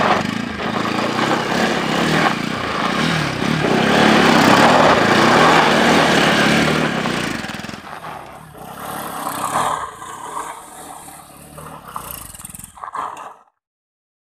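Bajaj Pulsar NS200's single-cylinder engine revving as the rear tyre slides and scrapes over loose dirt. It is loud for the first half, quieter and patchier after about eight seconds, and cuts off shortly before the end.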